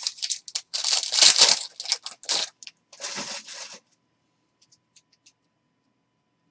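A foil wrapper of a Panini Prizm basketball card pack being torn open by hand: crinkling, tearing noise in a run of bursts for nearly four seconds, loudest about a second in. A few faint clicks follow.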